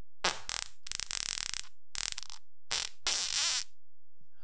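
A person farting, a string of about five short blasts over some three seconds, the last one longer with a wavering pitch.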